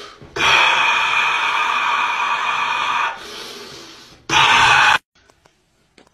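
A long, forceful breathy rush imitating a dragon breathing fire, lasting about three seconds and then trailing off, followed by a second, shorter burst near the end before the sound cuts off.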